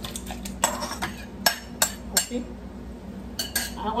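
A metal spoon scraping and tapping against a bowl as sliced strawberries are pushed out of it into a blender jar, giving a run of sharp clinks, the three loudest coming close together about one and a half to two seconds in.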